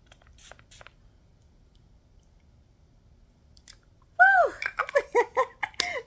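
Two quick sprays from a body mist pump bottle about half a second in. After a few quiet seconds comes the loudest part: a woman's wordless, delighted vocalising in several short swooping-pitch exclamations.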